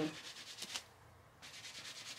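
Fingers rubbing a lilac ribbed knit dress to work off a mark left by a clothes hanger: faint, quick scratchy strokes, a brief pause about a second in, then softer rubbing.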